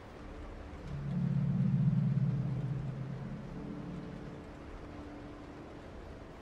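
Low droning tone of dark ambient background music, swelling up about a second in and slowly fading, over fainter held higher notes.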